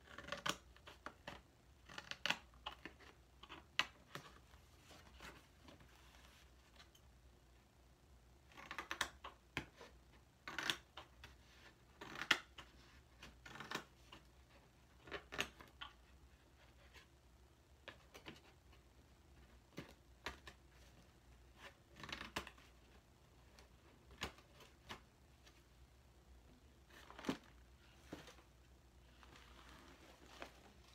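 Scissors cutting through thin cereal-box cardboard: irregular short snips and crunches, some coming in quick clusters.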